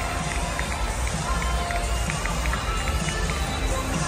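Music over an arena's public-address speakers with a bass beat, over the murmur of a large crowd.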